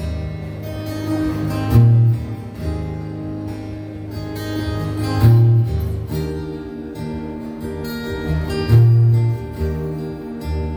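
Live rock band playing an instrumental intro on strummed acoustic guitars, with a heavy low note about every three and a half seconds.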